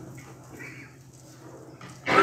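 A pause between spoken phrases: quiet room tone with a steady low hum and a few faint, brief sounds.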